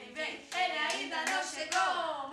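Several young children singing together in high voices, with hand claps scattered through the song.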